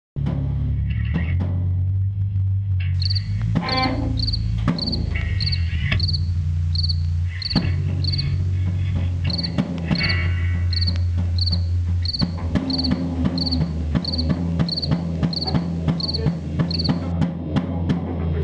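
A rock band playing in a rehearsal room: electric guitars and bass through amplifiers holding low sustained chords that break off and come back in, over a drum kit. A steady high tick sounds about every two-thirds of a second from about three seconds in until near the end.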